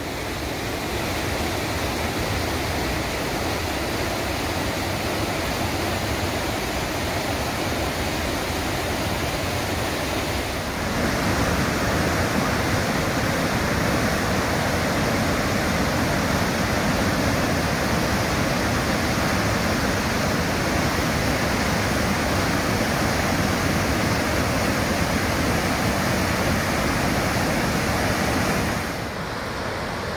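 Whitewater rapids of the Deschutes River rushing in a steady, loud wash of noise. The rush grows louder about eleven seconds in and drops back a little near the end.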